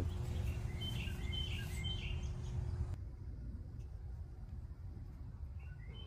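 Outdoor backyard ambience: a small bird gives three short high chirps about a second in, over a low rumble and a faint steady hum that fade about halfway.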